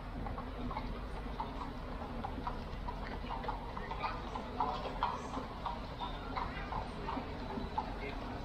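Horses' hooves clip-clopping on the paved street as a horse-drawn carriage goes by, an irregular run of hard clicks over steady street noise.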